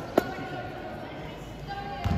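A basketball bounced on the court, the last knock of a quick dribble coming just after the start, followed by the steady murmur of a large sports hall with faint distant voices.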